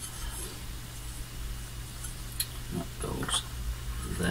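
Light clicks of metal parts being set on an aluminium base plate over a steady low hum, with a short whine-like sound about three seconds in.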